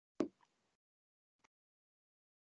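A single short pop or thump near the start, then a faint click about a second later, with dead silence around them.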